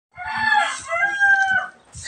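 A rooster crowing once, a drawn-out call in two long held parts.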